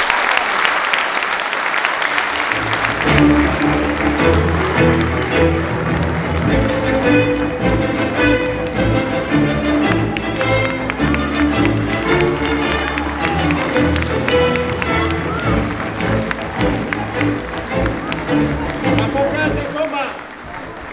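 Audience applauding, then music with a steady bass line starts about three seconds in and plays on.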